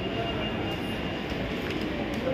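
Steady background noise of an indoor shopping mall: a constant low rumble with faint, distant voices in it.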